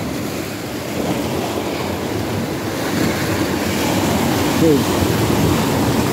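Small sea waves, about two or three feet high, breaking and washing over shoreline rocks. It is a continuous rushing surf that swells slowly.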